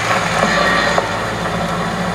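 A low, steady drone through an arena's sound system, with an even hiss of crowd noise above it.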